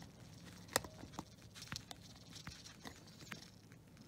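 Faint, irregular clicks and taps of a metal screwdriver working a small screw in the plastic housing of a Zhu Zhu Pet toy, the sharpest click about a second in.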